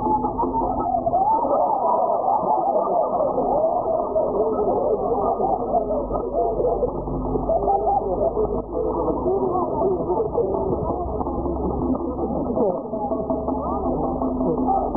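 Voices and music mixed together, with a steady low hum underneath; the sound is dull and muffled, cut off above the low treble.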